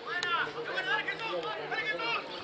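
Shouted calls from players and coaches on a football pitch: short cries that rise and fall in pitch, with no clear words.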